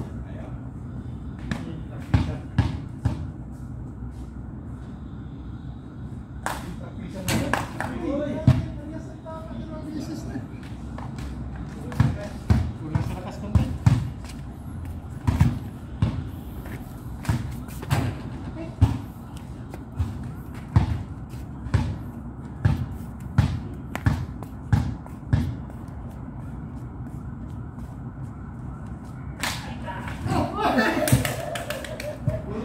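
Basketball bouncing on concrete steps as it is dribbled and played, heard as a string of sharp thuds, about one or two a second through the middle stretch. Men's voices call out briefly near the start of that stretch.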